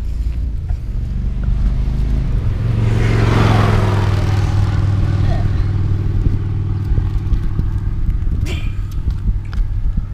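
A motor vehicle's engine rumbling steadily, with a vehicle passing on the road: the sound swells to its loudest about three to four seconds in, then falls in pitch and fades.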